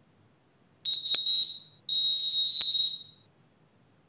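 Two loud, high-pitched whistle blasts in quick succession, the second a little longer than the first.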